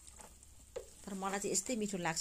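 Wooden spatula stirring fried momos and vegetables in a frying pan, with faint scraping and sizzling. A voice starts speaking about a second in.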